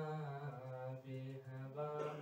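Solo male voice chanting a marsiya, a Shia elegiac lament, unaccompanied in long held melodic notes, with a short breath about a second in.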